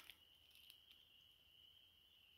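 Near silence, with a faint, steady high-pitched trill from distant calling animals in the night woods.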